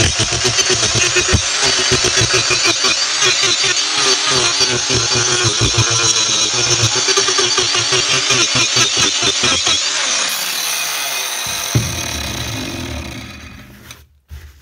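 Battery angle grinder fitted with an Arbortech TurboPlane carving disc cutting into a eucalyptus log: a loud, rough cutting noise with the motor's whine wavering under load. About ten seconds in the grinder is switched off and its pitch falls as the disc spins down, with a single knock near the end.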